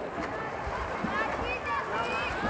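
Poolside crowd hubbub: spectators talking and calling out, with scattered high-pitched shouts in the second half, over the splashing of swimmers racing butterfly.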